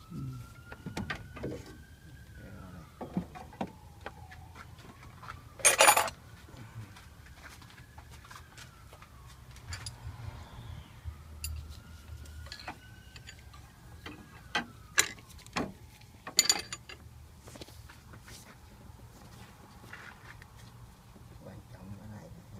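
Hand tools clinking and clicking on engine parts as a wrench is worked onto the serpentine belt tensioner, with a louder metal clatter about six seconds in and a few sharper knocks later on.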